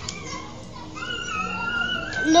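A child's voice holding one high, steady note, which starts about halfway through, after a quieter stretch with faint children's voices.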